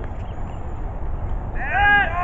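Low wind rumble on the microphone, then, about one and a half seconds in, a loud, high-pitched shout from someone near the camera that rises and falls in pitch and runs on past the end.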